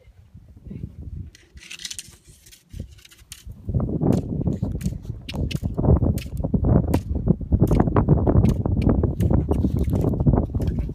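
Loud rumbling and crackling noise on the microphone, starting about four seconds in, made by contact or buffeting right at the phone, with many sharp clicks.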